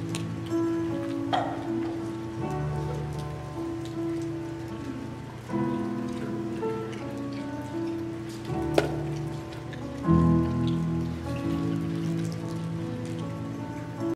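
Soft live instrumental music on electric guitar: sustained chords that change every couple of seconds, with two brief sharp clicks.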